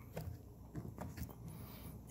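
Faint rustling and a few light clicks as a fabric sheath is worked by hand onto a steel hawk head. The sheath fits tightly and has to be forced on.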